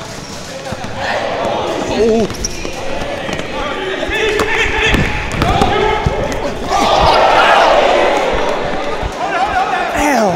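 A basketball bouncing on a gym floor during a game, a series of sharp strikes, amid shouts and voices from players and onlookers echoing in the hall. The voices swell about seven seconds in.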